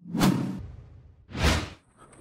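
Two short whooshes of rushing air noise, about a second and a half apart, each rising quickly and then fading.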